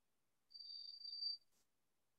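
A single short, high-pitched steady tone lasting just under a second, about half a second in, in otherwise near silence.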